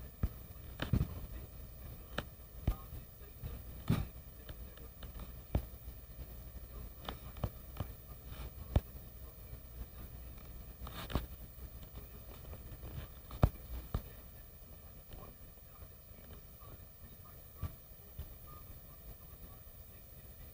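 Fingertip taps on a tablet's touchscreen while typing on the on-screen keyboard: irregular short sharp taps every second or two, fewer in the last few seconds.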